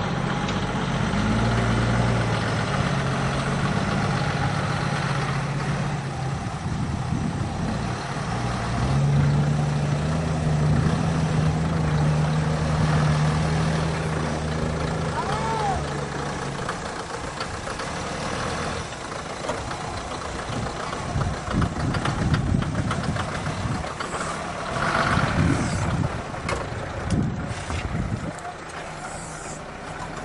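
Toyota Land Cruiser 80-series engine running under load as the 4x4 crawls over dirt mounds, revving harder about nine seconds in and easing off after about seventeen seconds. Irregular knocks and clatter follow as it works over the rough ground.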